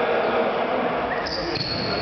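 Indoor futsal game in a large sports hall: the ball thudding on the court amid players' footsteps and shouted voices. A thin, steady high-pitched tone comes in a little past the middle.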